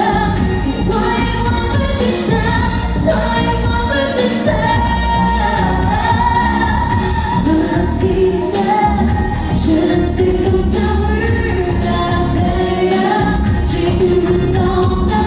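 A woman singing a pop song over full band accompaniment.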